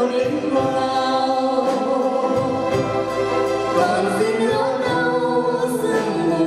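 A small mixed vocal group of men and a woman singing a slow ballad in close harmony, holding long chord notes, with acoustic guitar accompaniment.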